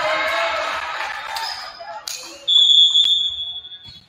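Voices and crowd chatter in a gym. About two and a half seconds in, a referee's whistle blows one long, steady high note lasting over a second, with a sharp knock partway through it.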